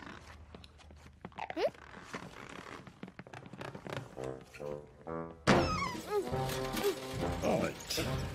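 Cartoon soundtrack: a few small knocks and a short rising squeak, then a run of short pitched notes. About five and a half seconds in, louder music enters suddenly with sliding, voice-like sounds.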